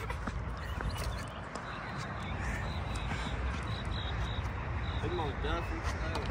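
Skateboard wheels rolling over a concrete skatepark, a steady rolling noise with faint short high chirps over it from about two seconds in.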